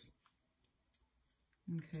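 A few faint, light clicks of fingers handling copper foil tape and cardstock. A woman's voice starts again near the end.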